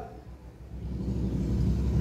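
A low rumble that swells in over the first second and then holds steady.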